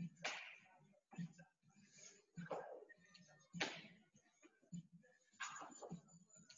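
Faint, hard breathing from a person exercising: short, sharp exhales every second or two, the sound of exertion during a burpee workout.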